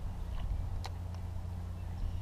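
A steady low hum runs throughout, with three light ticks in the first second or so.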